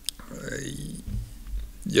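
A man's mouth and throat noises during a pause in speech: a sharp lip click, then a low, throaty hesitation sound before he speaks again near the end.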